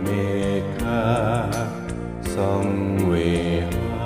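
Man singing a Thai pop ballad over a karaoke backing track with a steady beat, his held notes wavering with vibrato.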